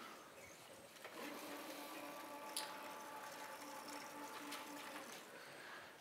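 Sliding chalkboard panels moving on their tracks: a faint, steady low hum with a few higher overtones that starts about a second in and stops just before the end, with a single click in the middle.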